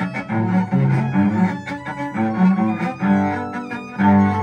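Solo cello played with the bow: a continuous run of separate notes, changing pitch every fraction of a second.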